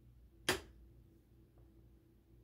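A single sharp click about half a second in, a wall light switch being flipped back on, over a faint steady low hum.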